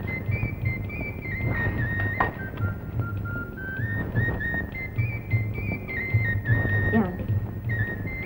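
Background film music: a high, flute-like melody of held notes that step up and down, over an uneven low throbbing.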